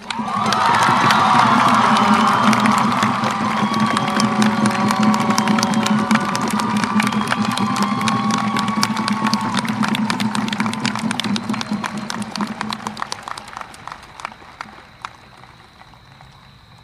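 Crowd cheering and applauding, with dense clapping and scattered shouts. It starts loud at once and slowly dies away over the last few seconds.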